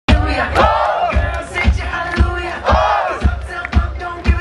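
Concert crowd shouting and cheering loudly over live music with a steady kick-drum beat, about two beats a second, cutting in suddenly.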